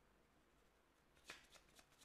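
Faint rustling and light ticks of tarot cards being handled on a table, a few quick touches starting a little past halfway in.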